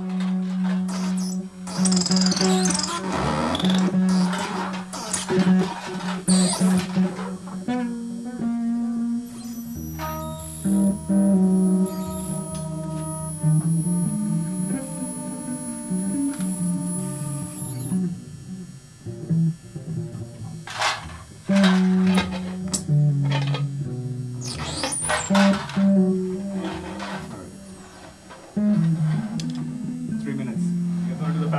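Live band music: a bass guitar line under electric guitars run through effects, with scratchy, noisy passages and a held chord in the middle.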